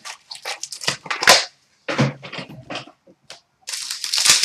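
Cardboard box of hockey card packs being torn open by hand and its wrapped packs pulled out: a run of short crackling, rustling tears with brief pauses.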